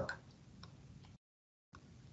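Very quiet room tone with a few soft, short clicks, dropping to dead silence for about half a second in the middle.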